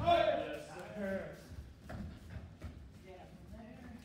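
A person's voice in a large hall, loudest in the first second, then fainter voices.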